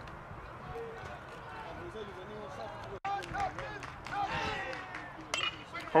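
Background chatter of spectators at a baseball game, then near the end the sharp crack of a bat hitting a pitch for a line drive.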